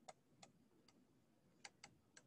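Near silence with a few faint, irregular clicks, about five in two seconds: a stylus tapping the writing surface while handwriting.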